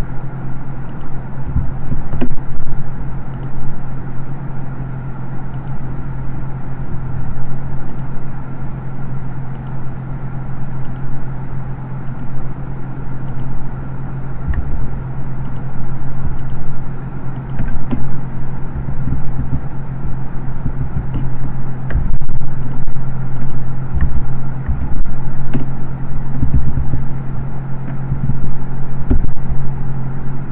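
A steady low hum with an uneven low rumble underneath, swelling and fading.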